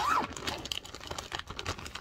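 Clear plastic bag crinkling and rustling as it is pulled open and handled, a quick irregular run of small crackles.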